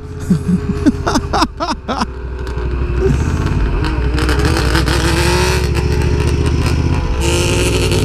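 Motorcycle engines under acceleration, heard from onboard a riding bike: after a few brief clicks, a steady engine note climbs in pitch from about three seconds in. Rushing wind rises near the end.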